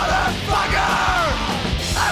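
Punk rock song: a full band playing under a yelled vocal, with one long drawn-out note that rises and falls in pitch in the middle.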